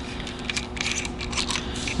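Consumables being unscrewed by hand from the head of a Thermal Dynamics SL60QD plasma cutter torch: a string of small clicks and scrapes from the parts and threads, over a steady low hum.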